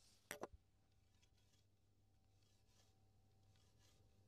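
Near silence: room tone, with one brief double click about a third of a second in.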